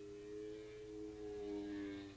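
Engines of two racing motorcycles running at high revs, heard from trackside at a distance as two separate steady engine notes, swelling louder toward the end as the bikes come closer.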